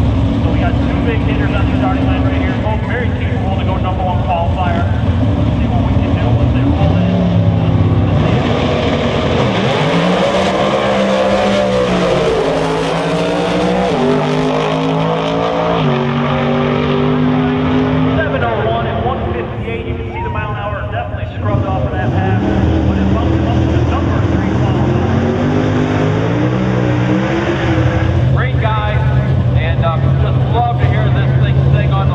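Two Outlaw 10.5 drag race cars making a pass at full throttle, their engine pitch climbing and dropping in a run of steps as they shift gears down the strip. Later a steady lower engine note takes over as the next car sits in the lanes.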